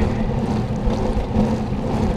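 Wind buffeting the microphone of a handlebar-mounted camera on a moving bicycle, a steady low rumble, with tyre noise from rolling on wet asphalt.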